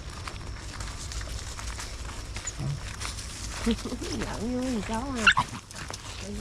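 Several young dogs playing and scuffling around a person's feet on a dirt path, with a short high yelp about five seconds in that is the loudest sound.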